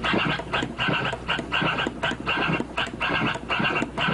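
Turntable scratching of the march-scratch kind: a record sample is pushed back and forth by hand while the mixer fader switches the sound on and off at random, giving a choppy run of short cuts, about three or four a second.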